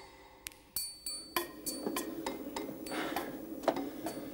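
Irregular sharp knocks and clinks, some with a short bright ring, coming closer together from about a second and a half in.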